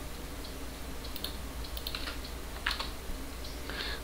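Faint, scattered keystrokes on a computer keyboard, over a low steady hum.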